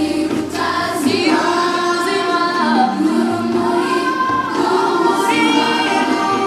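A group of children and young people singing together as a choir, several voices moving in a sustained melody.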